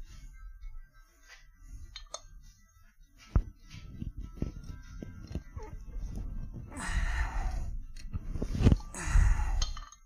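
Light metallic clinks, ticks and scraping as valve tappets are worked out of an aluminium overhead-cam cylinder head by hand and with a magnetic pickup tool. Two longer, louder scrapes come near the end.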